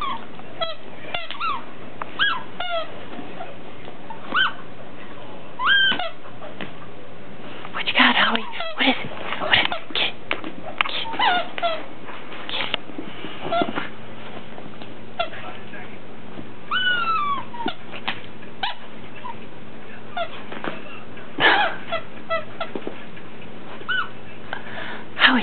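Bedlington terrier making short whining cries, many rising then falling in pitch, scattered over the whole stretch, with blanket rustles and small clicks as it digs and noses into a blanket.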